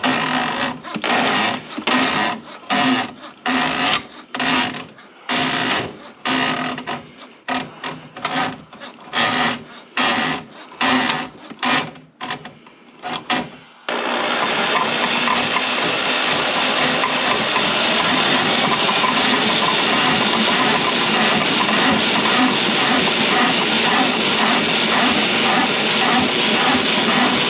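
Drum drain-cleaning machine spinning its cable into a sink drain, first in short, irregular bursts with pauses between them, then running continuously from about halfway through with a faint regular pulse.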